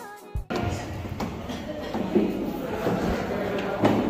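Background music cuts off about half a second in, giving way to indistinct voices and the hubbub of people climbing a narrow stone passage inside the pyramid, with a few sharp thumps.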